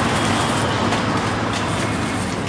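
Steady street traffic noise: a vehicle engine running close by, a loud even rush with a low hum underneath.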